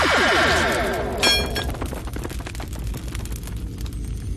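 Cartoon magic sound effect for a swirling energy vortex: a rapid run of falling tones, a brief bright chime about a second in, then fine electric crackling that grows quieter, with background music underneath.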